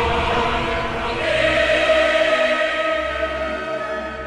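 Choral music singing long, held chords that swell in about a second in, over a low rumble that fades away in the first second.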